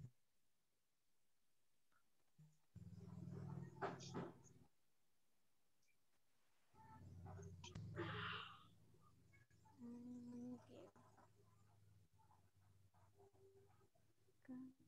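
Mostly near silence on a video call, broken twice by a few seconds of low steady hum with faint clicks and noise, as a participant's microphone opens and closes.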